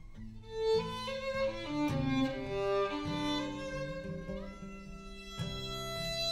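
Violin playing a slow melody of held notes over acoustic guitar chords, with no singing.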